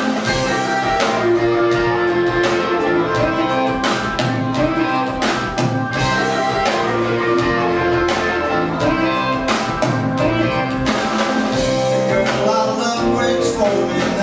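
Celtic rock band playing live: electric guitars picking a tune over a steady drum beat, loud and unbroken.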